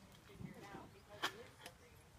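A quiet lull with faint, distant voices and a single sharp click a little past a second in.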